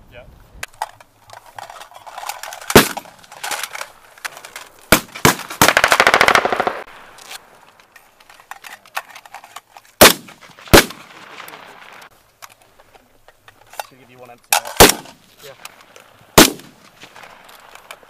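Small-arms gunfire from infantry rifles: single sharp shots at irregular intervals, some in quick pairs, and one rapid automatic burst lasting about a second and a half around the middle.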